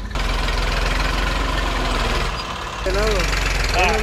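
Tractor diesel engine running steadily with a regular low pulse as the tractor pushes soil with its front blade, easing briefly a little past two seconds in.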